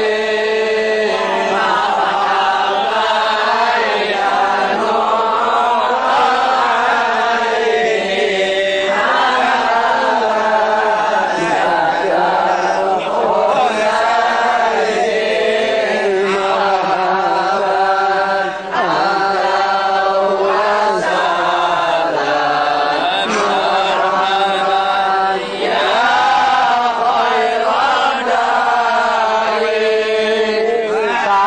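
A group of men chanting a Maulid recitation together: continuous melodic chanting in unison, with only brief breaks twice in the middle.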